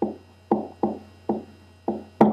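Five short, irregularly spaced knocks from a pen or stylus striking a writing surface as letters are written, each dying away quickly, over a steady electrical hum.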